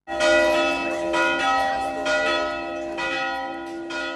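Church bells ringing, with a fresh strike about once a second over a dense, lingering ring. The sound starts abruptly.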